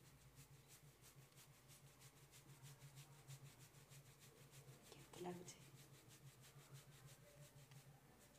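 Fingertips rubbing and scratching through coconut-oiled hair on the scalp in a head massage: a faint rustle in a quick, even rhythm of several strokes a second.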